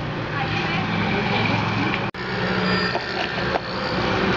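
Handling noise of a cardboard box and microphone cable being unpacked, over indistinct background voices. The sound drops out for an instant about halfway through.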